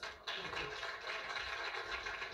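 Audience applauding, heard through a television's speaker; it starts suddenly about a quarter second in and runs on as an even clatter of clapping.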